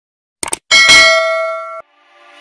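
Two quick clicks from a subscribe-animation sound effect, followed by a notification-bell ding that rings for about a second and then cuts off abruptly.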